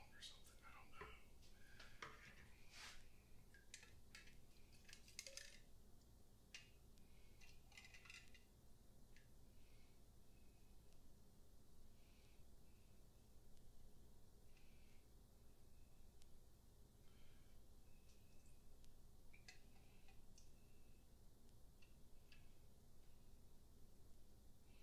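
Near silence: room tone with scattered faint clicks and taps, busiest in the first several seconds, from a plastic sampling tube and a glass test cylinder being handled while a mead sample is drawn for a gravity reading.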